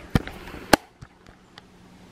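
Two sharp clicks about half a second apart, followed by a few faint ticks.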